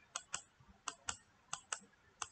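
Three faint computer mouse clicks, each a short press-and-release pair, about half a second apart.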